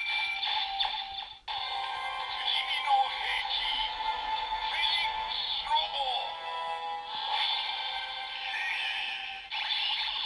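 Kamen Rider Build DX Build Driver toy playing its electronic transformation music and synthesized voice call-outs through its small built-in speaker, with a short break about one and a half seconds in.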